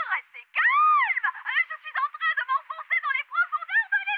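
A cartoon character's voice coming over a radio, thin and high-pitched and too garbled to make out: one long rising-and-falling cry, then rapid jabbering syllables.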